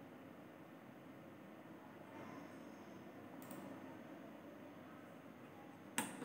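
Quiet room tone with one faint, short click about three and a half seconds in.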